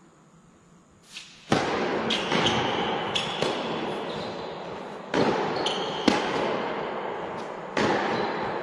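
Tennis ball knocks during a point: sharp racket strikes and court bounces at irregular intervals of about half a second to a second and a half. They start about a second and a half in, over a loud steady hiss that comes in suddenly at the first knock.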